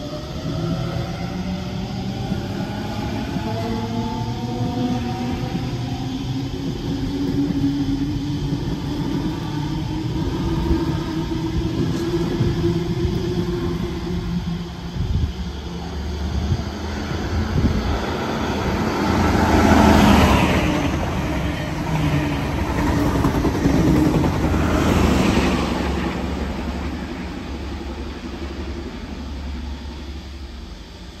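A Sydney electric suburban train accelerating away, its traction motors whining and rising in pitch over the first several seconds. Then another electric train approaches and passes with a low rumble and rushing wheel noise, loudest twice about two-thirds of the way through.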